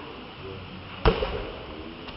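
A volleyball struck hard once by a player's hand about a second in, a single sharp smack, with faint voices of players around it.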